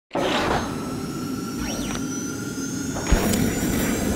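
Produced intro sound effect for a channel logo: a steady rush of noise with faint sweeping tones, then a sharp hit about three seconds in.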